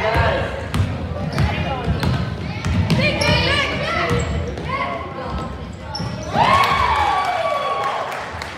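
A basketball being dribbled and bounced on a hardwood gym floor, giving irregular thuds, under the voices of players and spectators. About six seconds in a loud, sustained high tone lasting nearly two seconds rises over everything.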